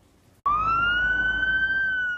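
Ambulance siren wailing: it cuts in suddenly about half a second in, one tone sliding slowly upward and just starting to fall near the end, with a low rumble of road noise beneath.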